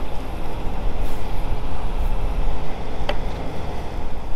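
Diesel engine of the salvage crane running steadily under load during a lift, a continuous rumble. A brief sharp chirp comes about three seconds in.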